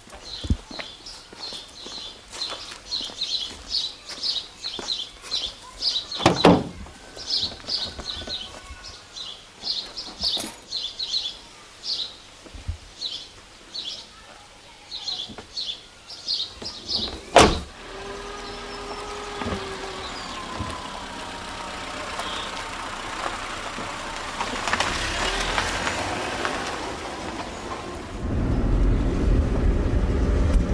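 A songbird chirping in quick repeated phrases, with a thump about six seconds in. A car door shuts loudly about seventeen seconds in, then a car engine runs steadily and grows louder near the end as the car drives off, heard from inside the car.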